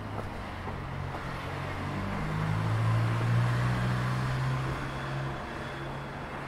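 Street traffic: a motor vehicle's engine hums low and steady. It grows louder and rises a little in pitch around the middle, then eases off.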